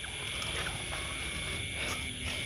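Crickets trilling steadily in a continuous high-pitched night chorus.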